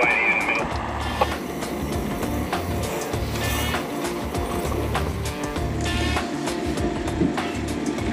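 Background music with a steady bass beat over a vehicle engine running, with a short high beep right at the start.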